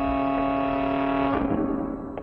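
Organ music on a drama score: a sustained chord held steady, which breaks off and dies away about a second and a half in.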